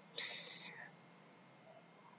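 A short, soft breath or whispered sound from the speaker in the first second, then near silence.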